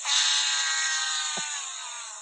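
A buzzy, horn-like comic sound effect played as a mocking send-off. A steady note jumps to a louder long note, which slowly sags in pitch and fades.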